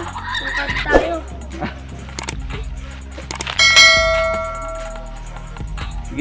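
Background music with a bell-like chime struck about halfway through, ringing out and fading over a second or two.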